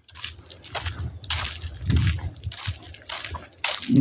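Footsteps on a wet, rain-soaked dirt track, a step roughly every half second.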